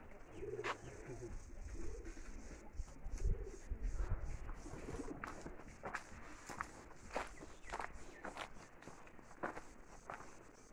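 A bird cooing in a few short, low calls in the first few seconds, with scattered sharp clicks.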